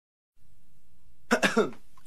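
A person's voice making three short bursts in quick succession, each falling in pitch, a little past a second in, over a faint low hum.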